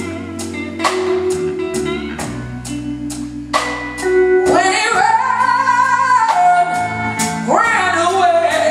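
Live blues band playing to a steady drum beat; about halfway in a woman's voice comes in, sliding up into a long held note, and slides up again near the end.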